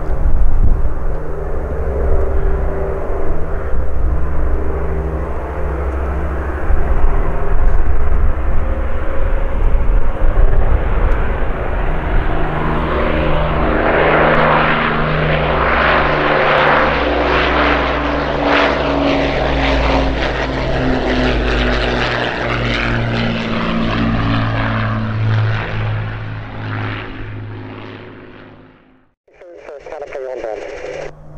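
Avro Lancaster's four Rolls-Royce Merlin V12 engines and propellers during a low pass: a steady droning that swells to its loudest about halfway through as the bomber goes by. It then fades away and cuts off shortly before the end.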